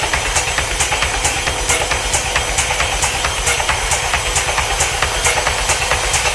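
Dark techno in a stretch without the kick drum: a regular high ticking of about four a second over a hissing noise texture and a faint held tone.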